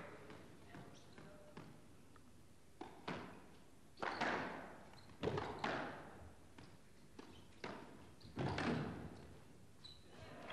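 Squash ball being struck by rackets and hitting the court walls during a rally: sharp knocks, often in pairs a fraction of a second apart, at irregular intervals with a short echo after each.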